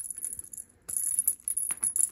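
A feathered cat wand toy jingling in quick, uneven shakes as it is whipped around. The jingle breaks off briefly about half a second in, then comes back, with a few light clicks near the end.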